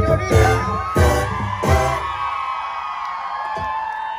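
Live banda sinaloense music: tuba and drums play three loud accented hits in the first two seconds, then the band drops out about halfway. A held, high sung note and whoops from the crowd carry on after it.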